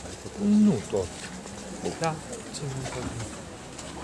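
People's voices close by in a crowd, mostly indistinct; about half a second in, one voice holds a short low note that then drops away, followed by a few shorter falling sounds.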